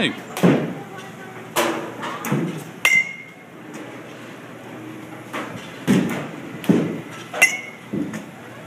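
Batting-cage sounds: a series of sharp knocks and thuds of baseballs and bats, two of them, about three seconds in and near the end, with a short metallic ping.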